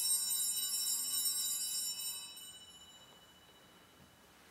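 Set of altar bells rung at the benediction with the monstrance: a cluster of high, bright ringing tones that fades away about two seconds in.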